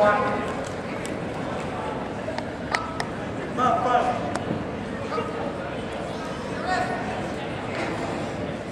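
Gym crowd murmur with brief shouts from onlookers, about four seconds in and again near the end, and a few sharp knocks around the middle.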